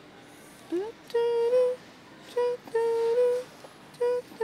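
A voice humming a tune in short phrases of held notes, beginning about a second in, mostly on one pitch with small steps up and a slight waver.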